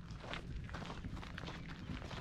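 Footsteps of a person walking, about three steps a second, over a steady low rumble.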